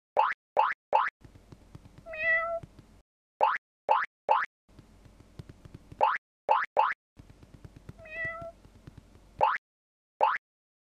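A cartoon cat meows twice, each a wavering cry under a second long, about two seconds in and again near the end. Between the meows come short, quick rising 'boing'-like sound effects in groups of three.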